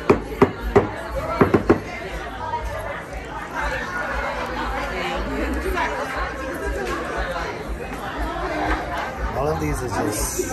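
Indistinct chatter of several people talking at once, with a few sharp clicks in the first two seconds.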